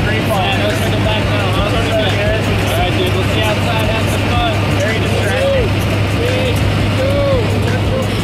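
Steady drone of a skydiving aircraft's engine and propeller heard from inside the cabin during the climb, with voices calling out over it.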